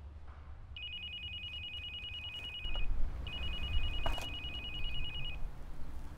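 Mobile phone ringing with an old-style trilling telephone ring: two rings of about two seconds each, with a short gap between.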